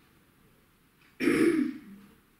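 A woman clearing her throat once, a loud rasp lasting about half a second, a little past the middle.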